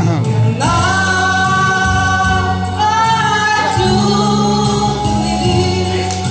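A man singing a slow ballad into a microphone over a karaoke backing track, gliding up into long held notes.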